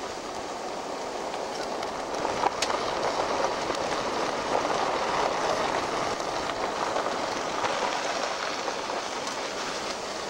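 Road noise heard inside a van driving on a rough, unpaved road: a steady rushing of tyres on dirt and gravel that swells louder a couple of seconds in, with a few small knocks about two and a half seconds in.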